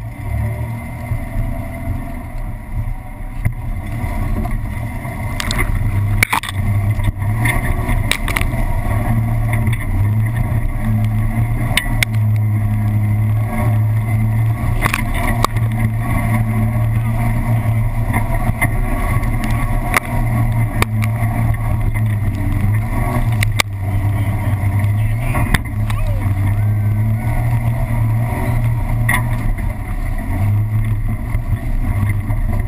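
Nissan Xterra's engine running under load in a low gear as it crawls up a rocky dirt hill-climb trail. The steady deep drone builds over the first few seconds, and scattered sharp knocks and clunks from the tyres and chassis working over rocks run through it.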